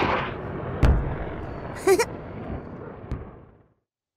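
Cartoon rocket-launch sound effect: a rushing roar of the rocket's engines that fades away to silence shortly before the end, with a sharp thump about a second in and a short rising cry around two seconds.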